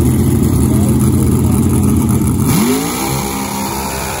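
Competition Eliminator dragster's engine running loudly, then revving up with a single rising sweep in pitch about two and a half seconds in.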